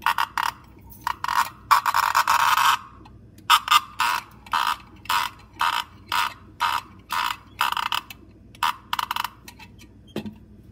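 Vintage 1930s tin chicken noisemaker, a hand-cranked toy, giving a series of short rasping bursts as its crank is turned, about two a second, with one longer rasp about two seconds in. It sounds nothing like a chicken.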